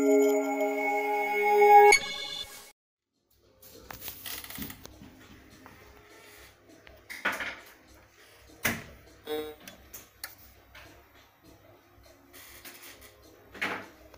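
Short musical logo jingle of a few held tones that ends about two seconds in. After a brief silence come faint room sound with a low hum and a few sharp clicks and knocks.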